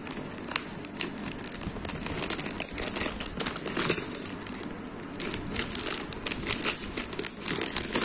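Plastic packaging crinkling as it is handled, with many quick, irregular crackles.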